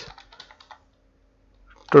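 Typing on a computer keyboard: a quick run of faint key clicks in the first part, then quiet.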